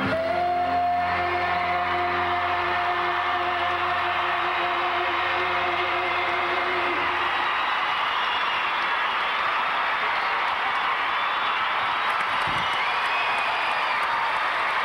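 Recorded choral music ends on a long held chord about halfway through, then an arena crowd applauds and cheers.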